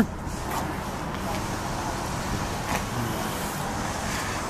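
Steady outdoor background noise like distant road traffic, with one faint click a little under three seconds in.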